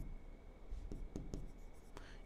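Pen stylus writing on an interactive touchscreen board: faint taps and short strokes of the tip on the screen, a few light ticks in quick succession about a second in.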